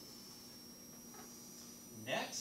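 Quiet room tone: a steady low hum with a faint, thin high whine.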